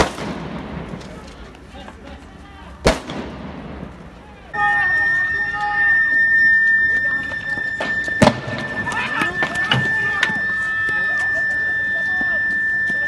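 Gunshots from riot police firing on the street: a loud crack, then a second one about three seconds later, each with a trailing echo. After that come shouting voices over a steady high tone, with another sharp shot about eight seconds in.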